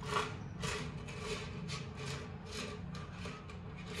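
Soft, repeated rasping scrapes from a bare copper wire coil, about two to three strokes a second, as a battery-and-neodymium-magnet train creeps slowly through it. The crawl and the sticking come from a used, weakened AA battery.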